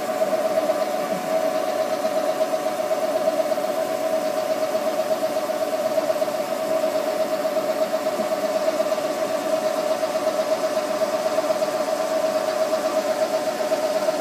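Haas CNC vertical mill running, its spindle turning at 1,000 RPM while the axis feeds slowly at 12 inches per minute: a steady, slightly warbling whine.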